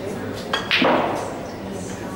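Snooker cue tip clicking against the cue ball about half a second in, followed a moment later by a louder clack of the cue ball striking another ball, which rings briefly and fades.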